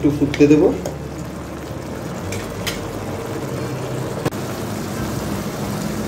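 Mola fish in a thin mustard gravy simmering in a wok, a steady bubbling and sizzling with a few faint clicks.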